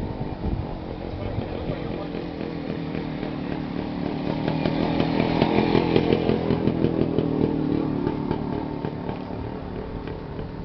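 A vehicle engine running with a raspy, rhythmic note; it grows louder to a peak about six seconds in, then fades.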